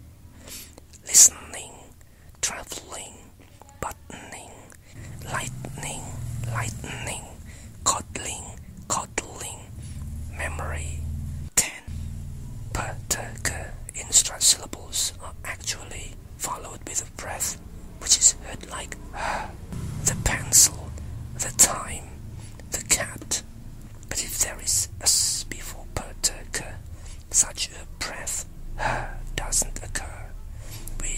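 A single voice whispering English words in short bursts with brief pauses, rich in sharp hissing consonants.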